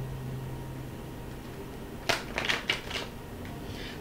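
Tarot cards being handled: a few quick rustles and taps about two to three seconds in, over a faint low hum.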